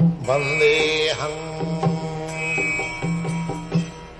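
Devotional music: a male voice sings a Sanskrit prayer line over a steady drone, followed by plucked sitar-like string notes.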